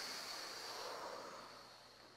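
A long breath blown out through the mouth in a deep-breathing calming exercise, a soft breathy rush that slowly fades away.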